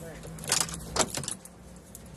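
Car keys jangling as they are handled, in a few short metallic rattles, over a low steady hum.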